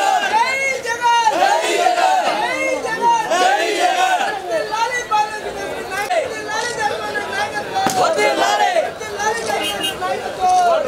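A crowd of people talking and calling out over one another, several raised voices at once.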